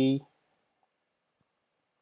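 A spoken word trails off, then near silence with a single faint keyboard keystroke click about one and a half seconds in.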